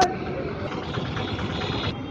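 A sharp click, then the steady running noise of a motor vehicle engine close by, which stops just before the end.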